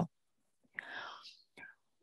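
A presenter's soft intake of breath, heard as a short breathy hiss about a second in, followed by a faint mouth click, in an otherwise hushed pause between sentences.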